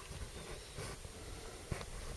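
Low, steady hiss of a quiet room with faint handling noise, and a single small click near the end.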